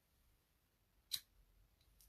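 Near silence, broken by a single short, sharp click about a second in.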